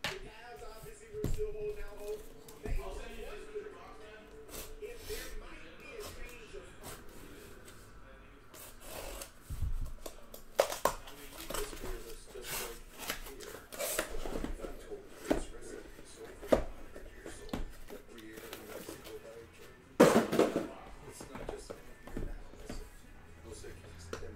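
Cardboard being handled as a card-case inner box is opened and a sealed hobby box is slid out: scattered taps, knocks and scrapes, with a louder sharp rasp about twenty seconds in.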